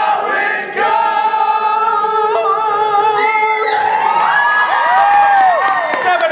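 Men singing a song unaccompanied into microphones, with the audience singing along; the notes are long and held, and near the end they bend up and down in drawn-out arching phrases.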